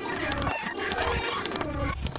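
Cartoon opening-theme soundtrack: a cat character's growling, roar-like vocalizing over the theme music, whose bass drops out for about half a second near the middle.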